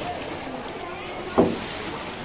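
Voices of people close by over steady background noise, with one short, loud sound about one and a half seconds in.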